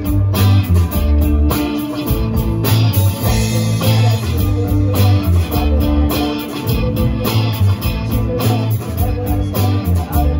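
Live rock band playing: electric guitars and a bass guitar over a drum kit, with a steady beat.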